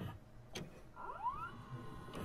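Videocassette recorder mechanism: a faint click about half a second in, then a brief rising motor whine as the tape starts to play.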